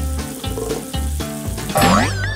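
Water splashing in a bathroom sink as it is scooped onto a face by hand, over background music with a steady beat. Near the end a high sweeping tone rises and wavers.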